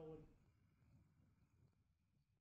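Near silence: faint room tone fading out, after the tail of a single spoken word at the very start.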